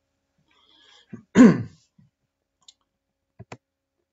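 A man briefly clears his throat, one short voiced sound falling in pitch, about a second and a half in. It is followed by a few faint computer mouse clicks near the end, two of them in quick succession.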